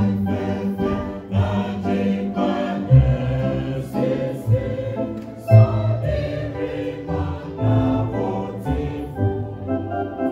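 A church choir of mostly women's voices singing an old Adventist hymn together, accompanied by an electronic keyboard playing organ-like chords and low bass notes.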